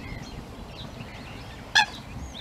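Eurasian coot giving one short, sharp call near the end, over faint chirping of small birds.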